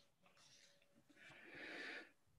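Near silence, then from about a second in a faint breath drawn in by a person about to speak.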